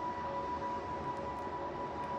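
Soft background music: a single steady held tone over a faint even hiss.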